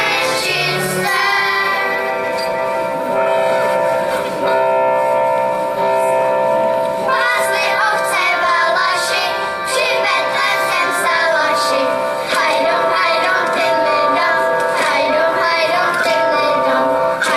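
Children's choir singing with electronic keyboard accompaniment. The keyboard holds steady chords for a few seconds between sung phrases, and the children's voices come back in about halfway through.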